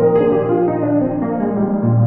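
Impact Soundworks Water Piano, a sampled water-filled grand piano, played from a keyboard: a soft B♭ chord with a major second in it rings and overlaps over a held low note, with a couple of new notes struck early on.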